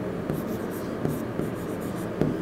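Felt-tip marker writing on a whiteboard: a run of short scratchy strokes as a label is written.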